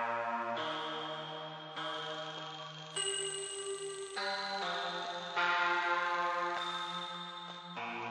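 A synth melody from an AAS Player plugin in FL Studio, played on its own without drums. It is a slow line of sustained notes, each held about a second before the next note takes over.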